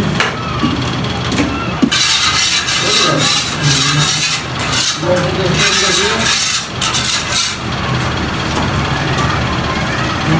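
Metal straight edge scraped across wet cement plaster on a wall to level the freshly thrown coat. The rough scraping runs from about two seconds in until nearly eight seconds, over a steady low hum.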